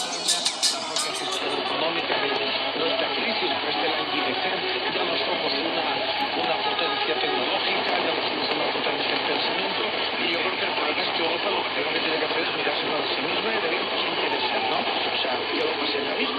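Mediumwave AM reception on a Xiegu G90 HF transceiver: a weak, distant station on 1503 kHz buried in steady static hiss, with faint speech in it. About a second and a half in, the full-range music of the station's internet stream cuts off and the band-limited, hissy radio sound takes over. A faint whistle slowly falls in pitch near the end.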